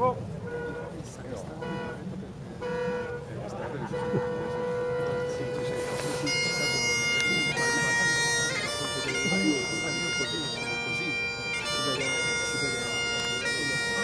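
Highland bagpipes of a pipe band striking up: a few short squawks as the pipes fill, a steady held note from about four seconds in, then a tune with changing notes from about six seconds in.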